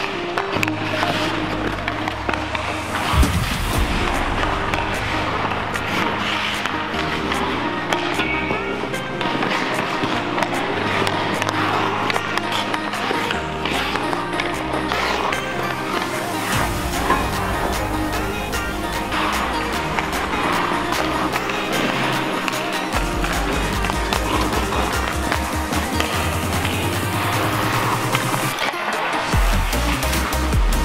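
Background music with a steady, stepping bass line, laid over ice skates scraping and a hockey stick knocking pucks on the ice. A single sharp crack about three seconds in.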